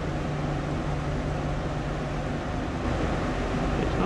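Steady drone of diesel engines running, with a constant rushing hiss over it.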